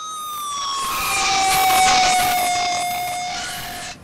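Electronic sound effect: several held synthetic tones, one sliding slowly downward, under a high sweep that rises and falls five times like a siren wail. It swells to its loudest near the middle and cuts off abruptly.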